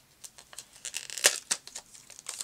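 Scrapbooking supplies being handled on a worktable: scattered rustling of paper and plastic with light clicks, one sharper click a little over a second in.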